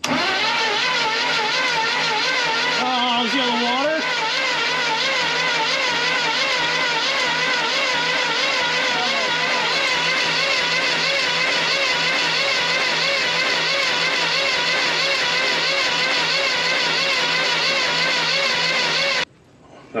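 The starter cranks a GMC P15 van's 292 straight-six with its spark plugs removed, spinning it over to blow water out of the cylinders. It makes a steady whirring with a regular wobble in pitch and stops abruptly near the end.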